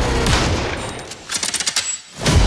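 Soundtrack music dies away, then a short, rapid burst of automatic gunfire comes a little over a second in and cuts off suddenly.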